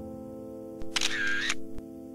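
Background music with held tones, over which a camera shutter sound plays about a second in: a click, a burst lasting about half a second, then another click.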